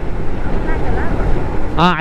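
Motorcycle riding at road speed: steady wind rush on the microphone mixed with engine and road noise. A man's voice cuts in near the end.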